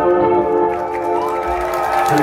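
A band's final synthesizer chord held and ringing out through the PA, with crowd cheering and applause starting to swell under it in the second half.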